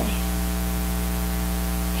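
Steady electrical mains hum with a layer of hiss: a low buzz made of many evenly stacked tones that does not change.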